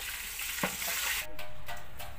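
Hot oil sizzling as chicken deep-fries in a large pot, with a single knock a little past half a second in. The sizzle cuts off abruptly a little over a second in, leaving a fainter steady tone.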